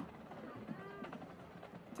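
Faint, indistinct voices over a low, steady background hiss.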